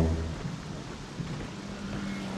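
Steady rain falling on a car, an even hiss with a faint low steady hum beneath it.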